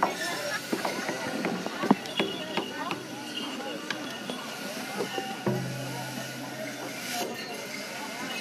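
Crowd murmur and chatter at an outdoor gathering, with scattered irregular clinks and taps and no drumbeat. A low steady hum comes on about five and a half seconds in.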